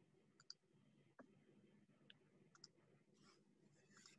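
Near silence: a handful of faint computer mouse clicks, some in quick pairs, over a low background hum.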